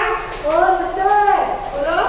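A high-pitched voice in long, gliding notes with no clear words, rising and falling in pitch.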